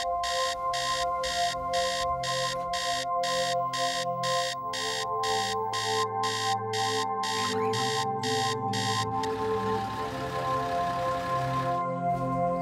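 A mobile phone alarm beeping in fast, even pulses, about three a second, over steady background music; the beeping stops about nine seconds in.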